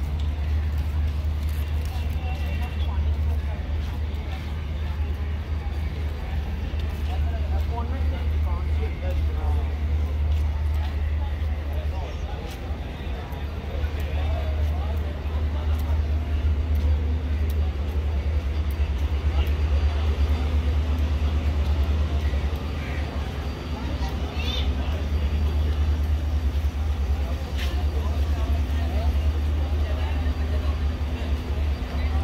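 Railway platform ambience: a steady low engine rumble runs throughout under scattered voices of people on the platform.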